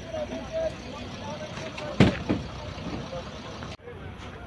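Voices of several people calling out over a steady low rumble, with one sudden loud burst about two seconds in.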